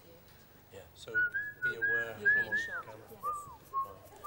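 A person whistling a short tune: it starts about a second in with a few held notes high up, then steps down to lower notes near the end.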